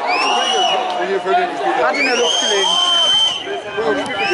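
Two shrill whistle blasts, each rising briefly and then held: a short one at the start and a longer one of about a second and a half in the middle. Crowd chatter and voices run underneath.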